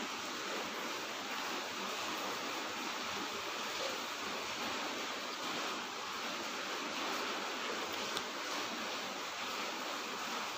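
Steady, even rushing hiss of background noise, with one faint tick about eight seconds in.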